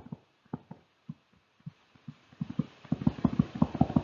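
A stylus tapping on a tablet screen as words are handwritten: soft, dull taps, scattered at first and coming quickly from about halfway.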